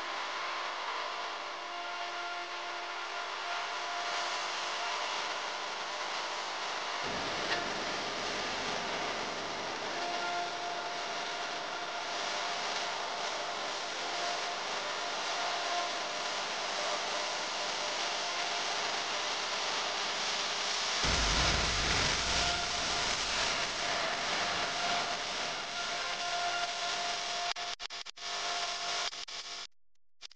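Beef and onion-spice masala frying in an aluminium pressure cooker: a steady sizzling hiss with a wooden spatula scraping and stirring in the pot. The sizzle grows louder about two-thirds of the way in.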